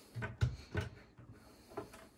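Wooden cabinet door being unlocked with a magnet key and pulled open: a few light clicks and knocks, the loudest a thump about half a second in, as the magnetic childproof latch releases.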